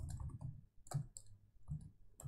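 Faint, uneven clicks of laptop keyboard keys being typed, a terminal command typed in and entered.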